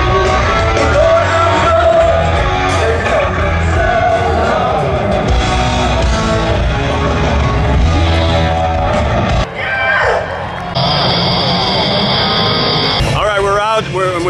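Live rock band playing through a festival PA, with singing and a heavy bass line. The music cuts off abruptly about nine and a half seconds in, and a few seconds of voices follow.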